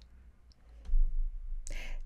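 A pause in speech: a faint click, then a low rumble of handling noise picked up by the microphone, and a short intake of breath just before talking resumes.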